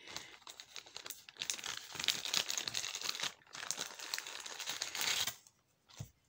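A small jewelry bag crinkling and rustling as it is handled and opened, in a dense run of irregular crackles that stops about a second before the end.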